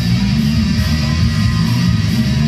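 Electric guitar playing a heavy metal song, loud and continuous.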